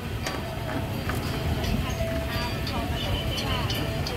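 Busy roadside market ambience: a steady low traffic rumble with distant voices and faint music in the background.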